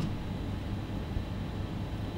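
A steady low rumble with a faint hiss over it: background noise with no distinct events.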